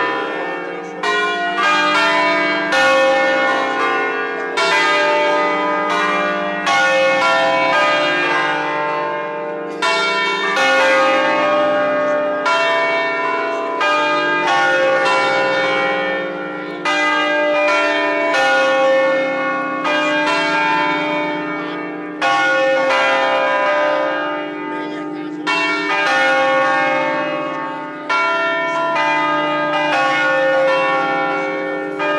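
Concert of five church bells cast by Angelo Ottolina of Bergamo in 1950, tuned on a slightly flat D-flat, rung by ropes as they swing on their wheels. Strike follows strike a second or two apart, each ringing on under the next.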